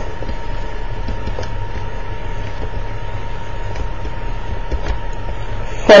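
Steady low hum and hiss of the recording's background noise, with a faint thin whine held throughout and a few faint ticks.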